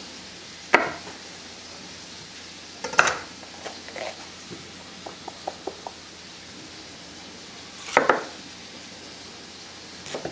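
Kitchen prep sounds: a few scattered knocks and clinks of utensils, pots and a cutting board, with a short run of light quick ticks in the middle, over a faint steady hiss.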